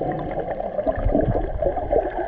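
Muffled underwater water noise, a steady gurgling and sloshing heard from below the surface, with small scattered clicks.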